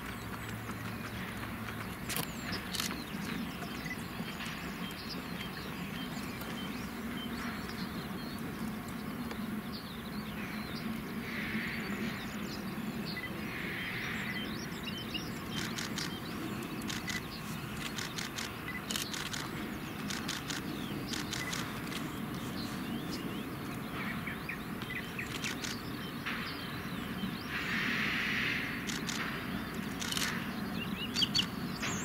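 Small steam tank locomotive working a short passenger train slowly toward the listener, heard from some way off as a low steady rumble, with birds chirping.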